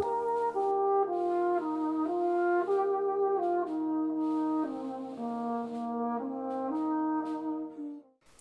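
Small brass ensemble playing a slow passage of held chords, with a tenor horn featured over trombones; the music fades out near the end.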